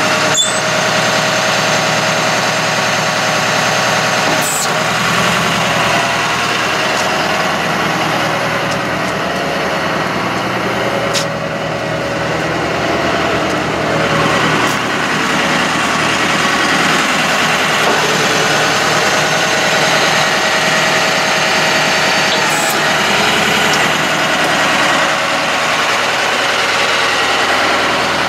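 Truck engine running steadily with the power take-off engaged, turning the hydraulic pump for the Altec boom: an even drone that holds at the same level throughout.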